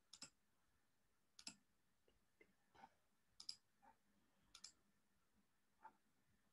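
Faint, scattered clicks of a computer pointer button, about seven in all, several as quick double ticks, over near silence.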